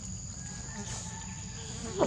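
Insects droning steadily in one continuous high-pitched tone, over a low rumble, with a sharp knock against the microphone right at the end.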